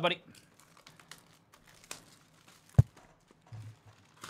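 A cardboard trading-card hobby box being opened by hand: faint rustling and small clicks of the cardboard flap, with one sharp knock nearly three seconds in.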